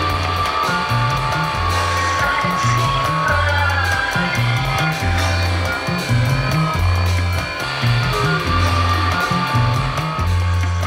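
Runway show music: an instrumental stretch of a song, a repeating bass line under sustained higher tones at a steady level.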